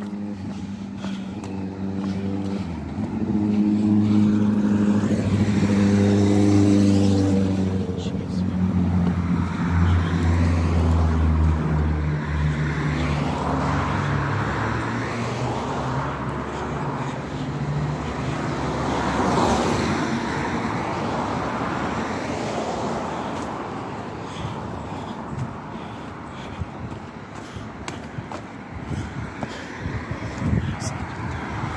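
Road traffic: a motor vehicle's engine hums low and steady for the first half, its pitch sinking slowly, then a car passes by about twenty seconds in and its noise fades.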